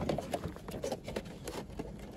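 Cardboard box of drinking glasses being handled and turned over in the hands, giving scattered light clicks and taps.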